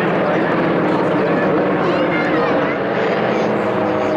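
A propeller plane's engine drones steadily as the aircraft passes overhead, with voices faintly mixed in.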